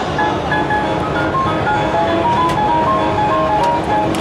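A simple electronic jingle: a melody of short, clear single notes stepping up and down, over a steady background noise, with a few faint clicks near the end.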